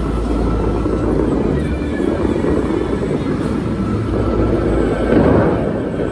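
Fountain water jets rushing in a steady spray, swelling a little about five seconds in, with crowd voices and faint music underneath.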